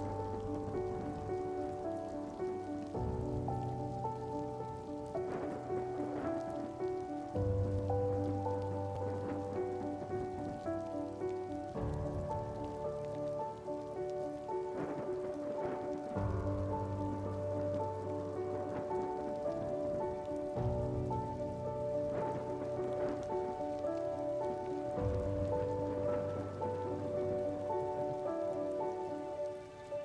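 Steady rain sound mixed with slow background music of held chords that change every few seconds over a low bass note.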